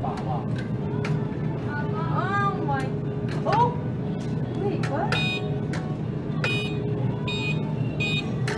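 Supermarket ambience: a steady low hum with indistinct voices, and a few short high beeps about five to seven seconds in.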